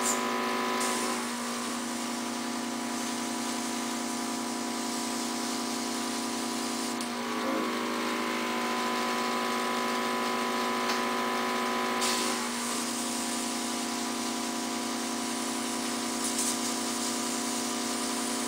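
Airbrush gun of a portable oxygen infusion system running, with a steady motor hum under an airy spray hiss as it mists oxygen activator onto the skin. The hiss shifts slightly about a second in, and again about 7 and 12 seconds in.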